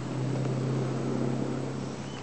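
Takeuchi TB175 mini excavator's diesel engine idling, a steady low hum.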